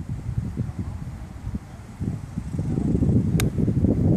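A golf club strikes a ball once, a single sharp click about three and a half seconds in, over a low rumble.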